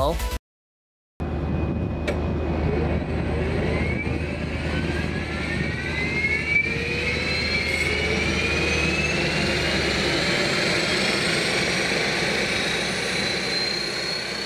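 Fairchild Metroliner's Garrett TPE331 turboprop engine starting up: a whine, starting about a second in, that rises steadily in pitch as the turbine spools up, over a low rumble.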